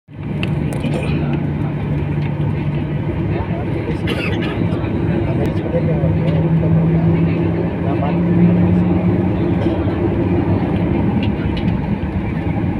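Jet airliner's engines and cabin noise heard from inside the cabin as the plane moves along the runway on the ground: a steady low hum and rush that swells slightly partway through, with people talking in the cabin.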